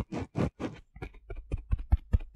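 Handling noise from a microphone being moved into place against the face, picked up by the mic itself: irregular rubbing, scratching and clicking, with sharper low thumps in the second half as it brushes against beard hair.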